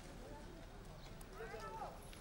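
Faint voices of people in a group, with one brief call about one and a half seconds in, over a low steady hum and outdoor background noise.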